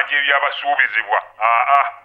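Speech only: a caller's voice over a telephone line, thin and narrow in tone, stopping just at the end.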